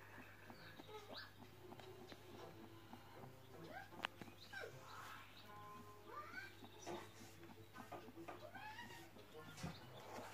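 Faint animal chirps and squeaks: many short calls rising and falling in pitch, over a low steady hum.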